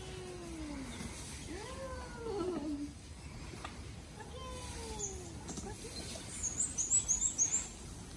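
A small child's voice making three drawn-out calls that glide up and then fall away, each about a second long, over steady outdoor background noise.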